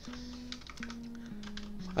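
Scattered computer keyboard keystrokes, light clicks, over soft background music: a slow run of held notes stepping down in pitch.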